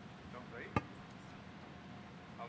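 Faint, indistinct voices with no clear words, and one sharp knock a little under a second in.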